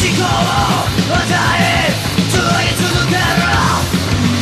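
Hardcore punk recording: a male lead vocal sung in several phrases over distorted electric guitar, electric bass and a fast, steady drumbeat.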